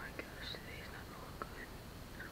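A man whispering, breathy and without voiced tone, with two small clicks, one just after the start and one about a second and a half in.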